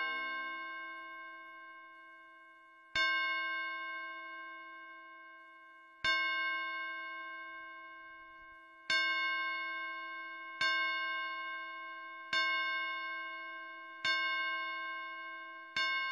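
A bell-like chime struck again and again on the same note, each strike ringing out and fading before the next. Seven strikes, about three seconds apart at first and coming closer together toward the end.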